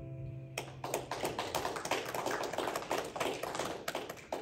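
Small congregation clapping after a song: many quick, irregular claps starting about half a second in and thinning out near the end, while the acoustic guitar's last chord dies away underneath.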